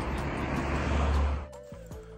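A steady rushing noise with a heavy low rumble that cuts off suddenly about one and a half seconds in, giving way to quieter background music of held steady tones.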